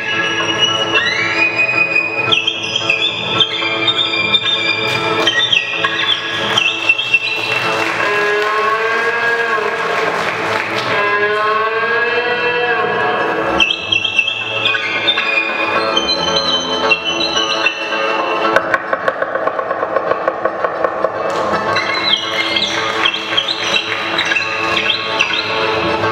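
Folk instrumental ensemble playing, led by a violin, with accordion, cimbalom and double bass accompanying. The violin plays high held notes with sliding glides into them, and has a stretch of wavering, swooping slides in the middle.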